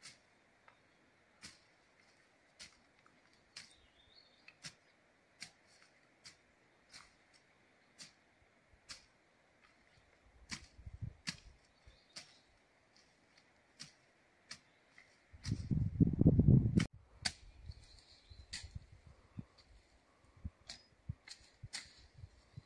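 Machete strokes chopping brush and weeds, heard from a distance as sharp, thin chops about once a second. About fifteen seconds in, a loud low rumble lasts a second and a half.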